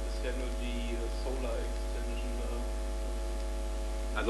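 Steady electrical mains hum over room tone, with faint, low voices murmuring underneath.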